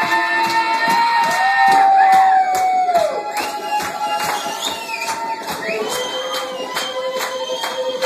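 Live acoustic band music: a steady strummed guitar rhythm under long held notes that slide up into pitch and bend down at their ends, with cheering from the audience.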